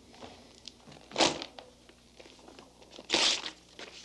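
Sheets of paper manuscript being torn up and crumpled by hand: two loud rips, about a second in and about three seconds in, with faint rustling between.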